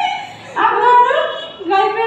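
High-pitched women's voices, talking and laughing with rising, squeal-like pitch.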